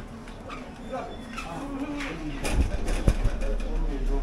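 Low, indistinct voices of a group talking as they walk, with a couple of sharp knocks about three seconds in.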